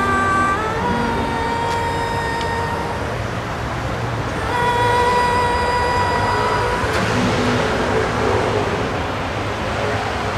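A woman singing a slow song in long-held notes to her acoustic guitar, over a steady hum of road traffic. The singing stops about seven seconds in, leaving the traffic noise.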